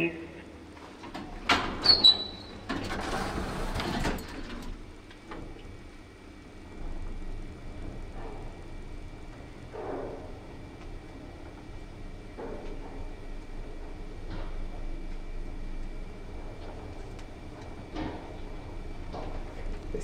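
Early Kone lift: about two seconds in, clicks and a short high tone, then the car doors slide shut over a second or so. From about seven seconds the car runs upward with a steady low hum and a faint high tone, broken by a few soft clicks.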